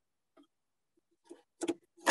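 Mostly quiet, then a few short, faint clicks near the end: hands handling the wiring and the power socket in a metal go box.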